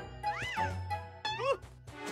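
Cartoon background music with a bass line, over which a cartoon character makes two short, high-pitched wordless vocal sounds that rise and fall in pitch: one about half a second in, and a quicker one about a second and a half in.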